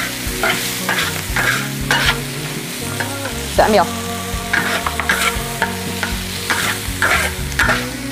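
Metal spatula scraping and tossing fern shoots and cured pork around a large wok while the hot oil sizzles. The scrapes come as irregular strokes, about two a second.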